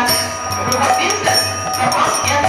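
Devotional bhajan music: small hand cymbals (kartals) ringing in a quick, steady rhythm over a stepping melody.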